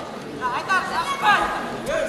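Spectators' voices and chatter in a large sports hall, with several voices raised between about half a second and a second and a half in.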